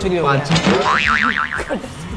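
A comic wobbling 'boing'-like tone, rising and falling several times in quick succession about a second in, after a short stretch of talk.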